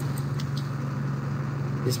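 A steady low-pitched hum with no other events, the same drone that runs unchanged under the narration on either side.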